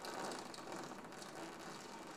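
Typewriter keys clattering in quick strikes, starting suddenly, from a film trailer's soundtrack played through room loudspeakers.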